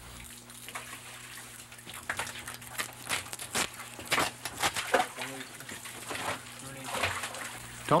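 Wet slaps, knocks and splashes of cod being handled, cut and split on a wet wooden splitting table, in many short irregular strikes.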